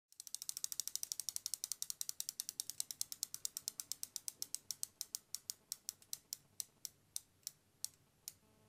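Bicycle freehub ratcheting as a spun rear wheel coasts down: fast, sharp ticks at about ten a second that slow steadily to one every half second or so as the wheel loses speed.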